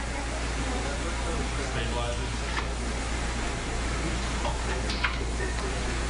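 Operating-room room tone: a steady low hum under an even hiss from air handling and equipment, with a faint click about five seconds in.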